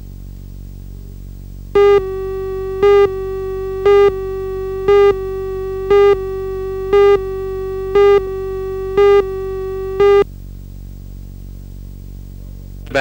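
Broadcast videotape countdown leader: a steady electronic tone starts about two seconds in, with a louder beep on each second, nine beeps in all, and cuts off about ten seconds in. A low steady hum runs underneath throughout.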